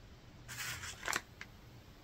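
Faint crinkling of a clear plastic zip-top bag being handled, with a couple of light clicks about a second in.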